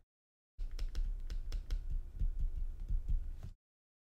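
A stylus tapping and scratching on a graphics tablet while handwriting, heard as an irregular run of light clicks and soft thumps. It starts about half a second in and cuts off abruptly about half a second before the end.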